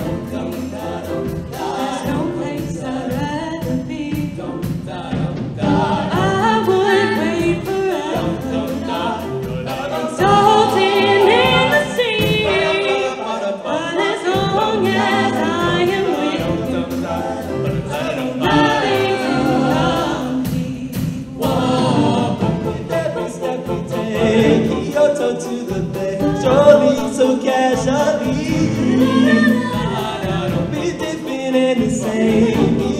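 A small group of show choir singers singing amplified through microphones over a live band with drums. The music runs without a break, with a rise in level near the end.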